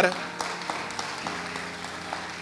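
Congregation applauding: a haze of scattered hand claps that slowly tapers off.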